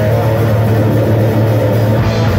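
Thrash metal band playing live and loud: electric guitar, bass and drums in a steady, unbroken wall of sound.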